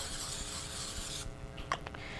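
Aerosol can of Pam cooking spray hissing steadily, cutting off a little over a second in. Two light clicks follow.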